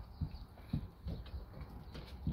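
Puppies knocking about: a few soft, irregular thuds and knocks, about four in two seconds.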